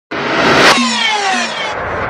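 Whoosh sound effect on the intro title: a rushing noise swells for about half a second, then a cluster of tones glides downward for about a second and trails off.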